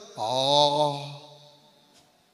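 A man's voice through a microphone holding one drawn-out syllable at a steady pitch for about a second, then trailing off.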